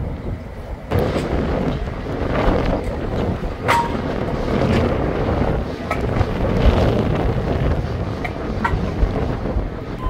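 City street ambience with wind buffeting the microphone: a low rumble of wind noise under a steady wash of traffic, which gets louder about a second in. A few short clicks and a brief high squeak sound through it, the squeak about four seconds in.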